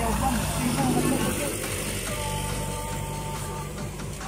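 Road traffic close by: a motor vehicle's engine running with a steady low drone as it passes, with people talking over it. About two seconds in, a thin steady higher tone is heard for about a second and a half.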